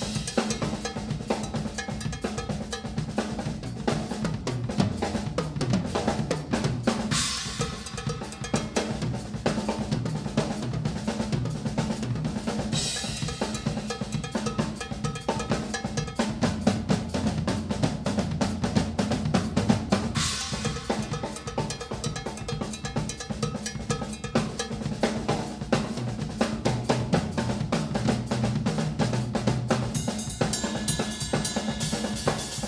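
Pearl drum kit played fast, with rapid bass drum and snare strokes throughout and cymbal crashes about seven, thirteen and twenty seconds in.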